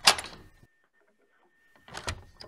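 Live radio-play sound effects: two sharp knocks of the hero's footsteps arriving. The first comes right at the start and dies away within about half a second, the second comes near the end, with near silence between.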